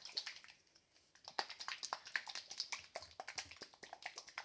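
A plastic slime shaker cup shaken by hand, the water and slime activator inside sloshing, with quick irregular clicks and rattles from the cup; the shaking pauses briefly about half a second in.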